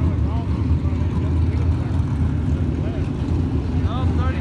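Dirt late model race cars' V8 engines running at low speed under a caution, a steady low rumble, with faint voices over it.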